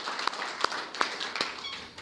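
Scattered applause from a small audience welcoming a guest: separate hand claps that thin out and fade toward the end.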